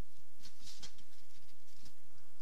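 Plastic packing wrap rustling and crinkling in hand as a small resin part is unwrapped from it, in irregular bursts about half a second in and again near the end.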